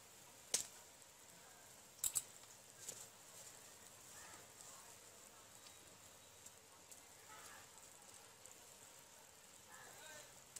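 Quiet bubbling and hiss of fish curry boiling in a large metal pot, with a few sharp clicks in the first three seconds.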